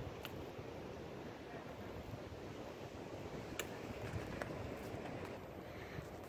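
Faint outdoor ambience: light wind noise on the microphone, with a few soft clicks.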